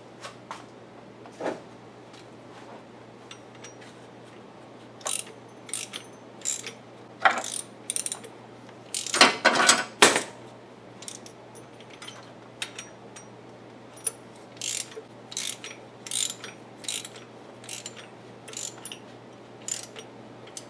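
Hand ratchet clicking in short spells and metal tools clinking while a bolt at a Ford 4.0L V6's crankshaft harmonic balancer is worked, with a denser, louder clatter about halfway through and quick runs of ratchet clicks near the end.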